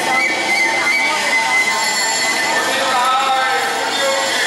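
Taiwanese opera stage accompaniment music: high, sustained wailing tones held over a dense, steady backing, with some bending sung or played lines near the end.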